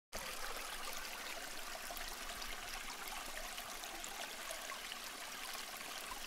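Steady rushing of running water, like a stream.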